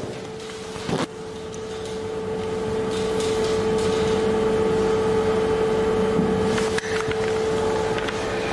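A steady hum with a held mid-pitched tone that grows louder over the first few seconds and then holds. There is a single click about a second in.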